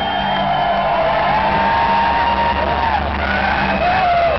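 Live acoustic guitar music in an instrumental passage, with a low note held steadily underneath and higher tones sliding up and down over it.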